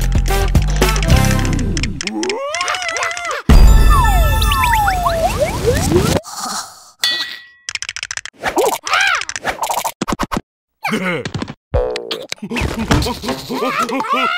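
Cartoon soundtrack: a couple of seconds of upbeat music, then squeaky gibberish character cries and comic sound effects. A sudden loud crash about three and a half seconds in comes with falling whistles, and short clicks, a ding and more squealing voices follow.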